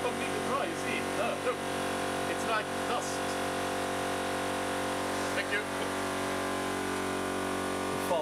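Steady electric hum of a hydraulic press's motor and pump unit running without load, with brief quiet voice sounds in the first few seconds.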